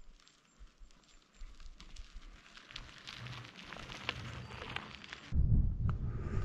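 A loaded touring bicycle approaching on a wet road: faint tyre hiss with fine crackling, its low rumble slowly growing louder. About five seconds in the sound cuts to a louder low rumble of wind on the microphone.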